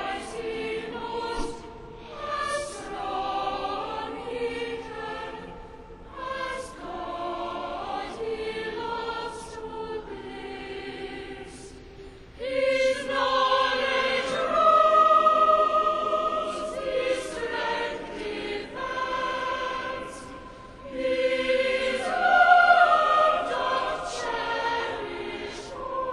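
A mixed choir of men's and women's voices singing a choral piece in a cathedral, in sung phrases that swell louder about halfway through and again near the end.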